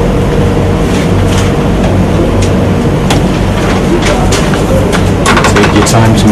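A steady, loud low hum with a noisy background. A cluster of short sharp clicks comes near the end.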